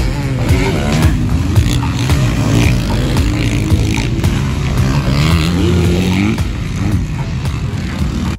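Dirt bike engines revving as several motocross bikes ride the track, the pitch climbing and falling with the throttle, with background music over them.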